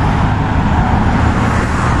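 Road traffic: cars driving past on the avenue, a steady noise of tyres and engines with no break.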